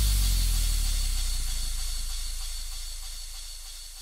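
Electronic dance track's tail with no beat: a held deep bass note and a high hissing wash of noise, both fading out slowly.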